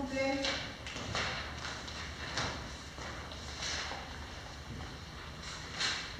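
Papers being handled and shuffled on a table: brief rustles come every second or so, with a short voice-like sound right at the start.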